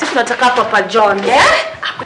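A woman's voice chanting in a repeated, rhythmic pattern, with a rising cry about a second and a half in.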